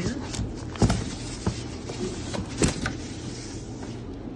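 A cardboard shipping box being opened and handled, with rustling and a few sharp knocks, the loudest about a second in and again near three seconds.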